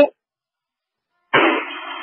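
Fire-department two-way radio heard through a scanner: the last word of one transmission cuts off, the channel drops to dead silence, and about 1.3 seconds in the next transmission keys up with a short rush of radio noise before a voice begins.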